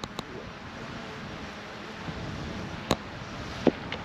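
Steady outdoor wind noise on the microphone, broken by a few small sharp clicks, the sharpest about three seconds in.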